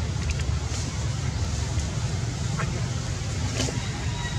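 Steady low background rumble throughout, with a few faint clicks, the clearest near the end.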